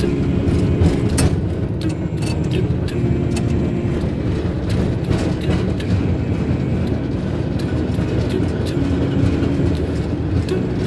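Gulmarg Gondola cabin running along its haul rope: a steady low rumble with a faint hum and scattered clicks and rattles.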